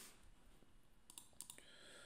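Near silence with a few faint clicks from a computer mouse.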